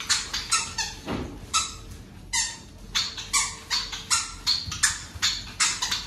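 Irregular hand claps, a few per second from more than one person, with one dull thud on the floor about a second in.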